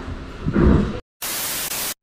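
About a second of handling noise with a soft thump, then a short dead-silent gap. It is followed by under a second of flat, even static hiss that starts and stops abruptly: a white-noise transition effect at an edit cut.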